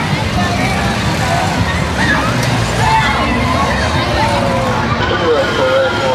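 Busy fairground midway: a steady low rumble of running ride machinery, with the chatter and calls of a crowd over it.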